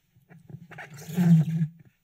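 A man clearing his throat into a desk microphone: one drawn-out, growly clear of about a second and a half, loudest a little past the middle.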